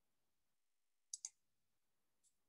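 Near silence broken about a second in by a quick double click: two short, sharp clicks a tenth of a second apart.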